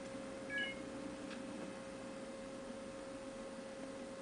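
Faint room tone with a steady, thin electrical hum, and one brief high chirp about half a second in.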